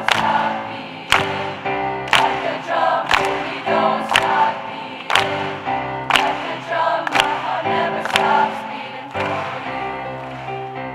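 A choir singing an upbeat song in parts, with hands clapped together on the beat about once a second.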